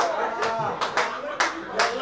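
A run of sharp hand claps, about two or three a second, with a man's voice running under them.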